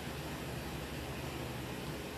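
Steady low hiss with a faint low hum: indoor room tone with no distinct event.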